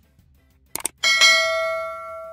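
A mouse-click sound effect, then, about a second in, a notification bell ding that rings on and slowly fades: the sound effects of an animated subscribe button and its bell.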